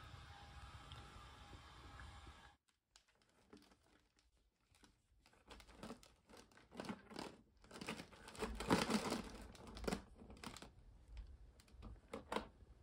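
Dry, crunchy bagel croutons rattling and shifting inside a clear plastic container as it is handled: an irregular run of light clicks and rustles, busiest about nine seconds in, after a few seconds of faint room tone and then silence.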